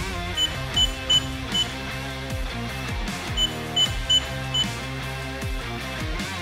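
Key-press beeps from a safe's digital keypad lock: four short, high beeps in quick succession, then four more about three seconds later, over background music.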